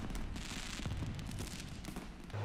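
Soft crackling of fireworks, a dense patter of tiny pops that slowly fades.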